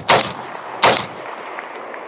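AR-15-style carbine firing two shots about three-quarters of a second apart, the end of a quick two-to-the-chest, one-to-the-head string, each shot trailed by a long fading echo.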